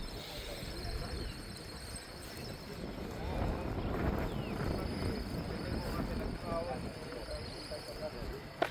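Faint, indistinct voices of people talking at a distance over a steady low outdoor rumble, with a thin steady high hiss above it.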